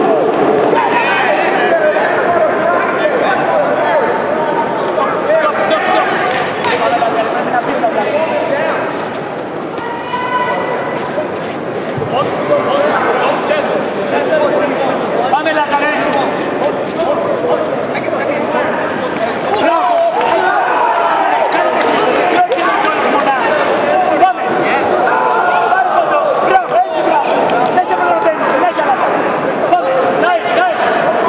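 Coaches and spectators shouting over one another in a large sports hall, many voices overlapping throughout. Occasional sharp thuds of kicks and punches landing cut through, the loudest about 24 seconds in.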